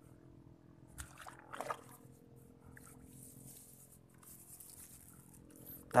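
Quiet background with a faint steady low hum, broken by two short soft handling noises about one and one and a half seconds in, the second louder, and a faint hiss later on.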